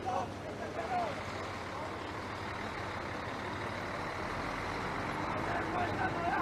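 A heavy truck's engine running steadily, with a deep rumble building from about four seconds in; men's voices talk briefly at the start and near the end.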